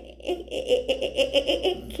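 A woman laughing: a quick, even run of short 'ha-ha' beats, about six or seven a second, starting about half a second in.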